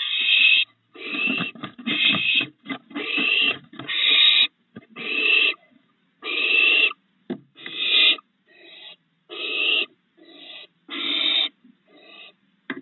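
Barn owl owlets giving rasping, hissing begging calls, each under a second long and repeated about once a second, the sound of hungry nestlings calling for food.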